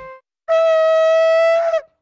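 A shofar blown in one steady, piercing blast a little over a second long, starting about half a second in and cutting off before the end.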